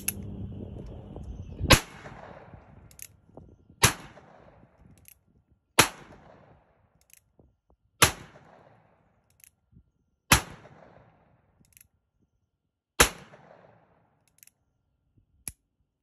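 Third-generation Colt Single Action Army revolver in .45 Colt firing six shots, about two seconds apart, each trailing off over about a second. Between shots come small clicks of the hammer being drawn back to full cock, which this single-action gun needs before every shot. A lighter click comes near the end.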